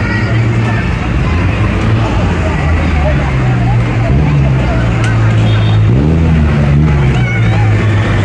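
Crowd chatter from people close by over a steady low rumble of road traffic.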